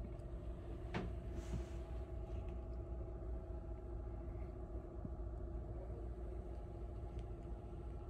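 Steady low mechanical hum with a faint droning tone over it, like a machine or ventilation running somewhere, with a single light click about a second in.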